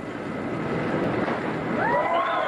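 Steady, even noise of an open-air diving pool venue, with spectators and water, swelling slightly as the diver drops toward the water; no distinct splash stands out. Near the end a held, pitched voice-like call begins.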